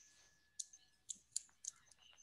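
Four faint, sharp clicks in quick succession about halfway through, over a near-quiet video-call line carrying a faint steady high tone.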